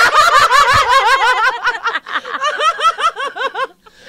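Women laughing loudly in quick, repeated high-pitched ha-ha bursts, in two runs with a brief break about halfway. The laughter dies away just before the end.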